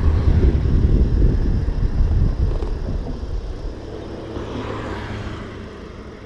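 Wind buffeting the microphone of a handlebar camera on a moving road bike, a heavy low rumble that dies down over the second half.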